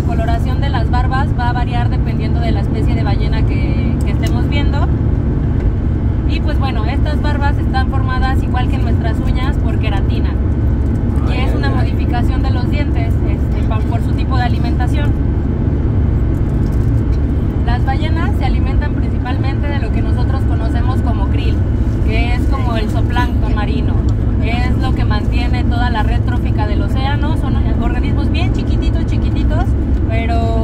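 Steady low road and engine rumble of a moving vehicle, heard from inside the cabin, with a woman's voice talking over it in stretches.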